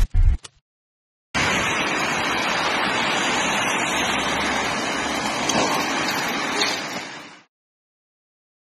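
A brief logo sting with low thuds, then, after a short pause, a steady rushing hiss of rain on a wet street picked up by a phone microphone. The hiss starts suddenly and fades out near the end.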